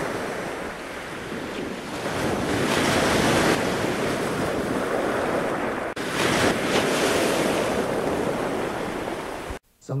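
Ocean surf and wind noise on the microphone: a steady, even rush that swells around three seconds in, breaks off for an instant near six seconds, and stops abruptly just before the end.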